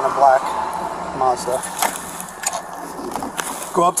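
Steady cabin noise inside a Ford patrol car, with a few sharp clicks and two brief snatches of a voice.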